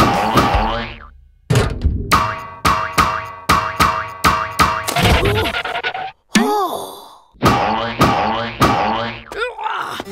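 Cartoon soundtrack music playing in short, evenly spaced stabs. It breaks off briefly about six seconds in for a wavering, springy 'boing' sound effect, then the music picks up again.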